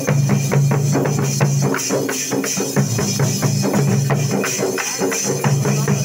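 Dollu kunitha troupe beating large dollu barrel drums with sticks in a loud, fast, driving rhythm, several strokes a second.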